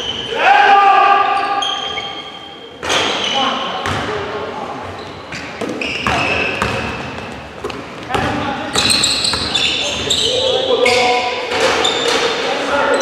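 Live basketball play on a hardwood gym floor: a ball bouncing with sharp knocks, short high sneaker squeaks, and players' shouts, all echoing in a large hall.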